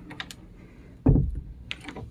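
Handling noise from a handheld phone camera being moved up close to a door: a few light clicks, then one low thump about a second in, followed by a couple of small ticks.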